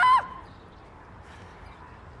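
A woman's loud, high-pitched shout, rising in pitch and then cutting off about a quarter of a second in, followed by faint background.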